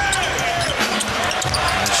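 Basketball being dribbled on a hardwood court, a short sharp bounce repeated several times, over the murmur of an arena.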